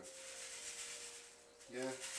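Brown sugar pouring from a plastic bag into a plastic mixing bowl: a soft, steady hiss of granules that fades away.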